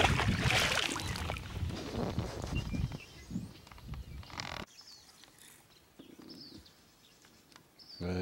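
A rushing, rumbling outdoor noise for about the first three seconds, then after an abrupt drop a little past halfway, quiet outdoor ambience with a few faint bird chirps.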